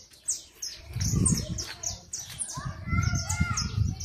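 Birds chirping steadily: short high notes that fall in pitch, several a second. From about a second in, a low rumble sits under them on the microphone.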